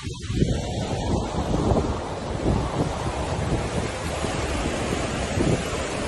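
Fast-flowing floodwater rushing through a street in a steady, loud torrent.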